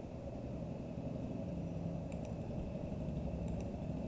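Steady low background rumble of room noise, with a few faint clicks about halfway through and near the end.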